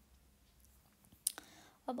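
A quiet pause with one sharp click a little past halfway, followed by a fainter one, before speech resumes near the end.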